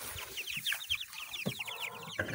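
A group of young chickens peeping: many short, high, falling peeps, several a second.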